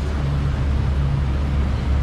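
Boat's outboard engine running steadily underway, a constant low drone, with wind and rushing water from the hull and wake.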